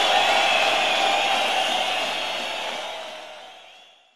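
A steady wash of live rock-show noise left over from the end of the band's number, fading out to silence by the end.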